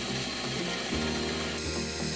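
Benchtop mill-drill running, its end mill cutting holes in a solid brass flywheel.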